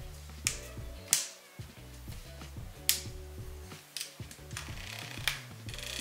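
Background music with several sharp, irregularly spaced clicks from a Sigma 35mm f/1.2 lens's barrel switches and aperture ring being worked by hand.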